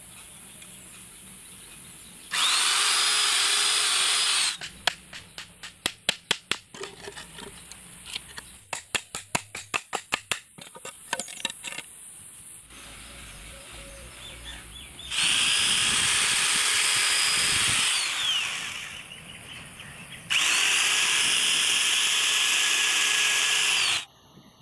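A handheld electric power tool runs in three loud bursts of a few seconds each, spinning up at the start and running down when it stops. Between the first two bursts come two runs of rapid hammer blows on wood.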